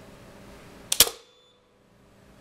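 AP50 three-pole circuit breaker tripping on its electromagnetic release under a 500 A test current, ten times its rating: a sharp double click about a second in, the second click the louder.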